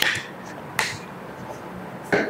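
Two sharp clicks about a second apart.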